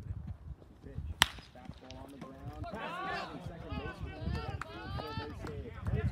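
A single sharp crack of a bat hitting a pitched baseball about a second in, followed by several spectators shouting and calling out.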